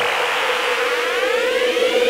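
Electronic music build-up: a held synth tone under several tones sweeping steadily upward, a riser leading into a dubstep track.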